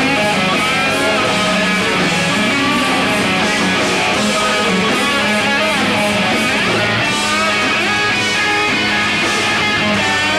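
Live rock band playing loud and steady: electric guitars with drums and cymbals keeping a regular beat.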